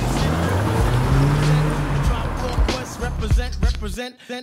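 A car pulling away over cobblestones, its engine note rising and then easing over the first two seconds. Background music with vocals comes in over it.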